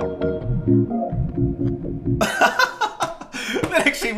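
Melody loop played back through FL Studio's Gross Beat at half speed: slowed, organ-like chords. About two seconds in, a man's laughter and voice come in over it.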